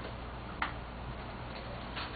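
Room tone with a steady hiss and a single short click about half a second in.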